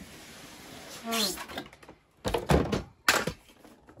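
Cardboard shipping box being opened and handled: scraping and sliding of cardboard, then a sharp thunk as the box is set down on the table.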